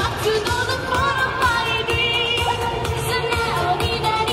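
Japanese idol pop song performed live: a female voice singing into a microphone over a steady dance beat.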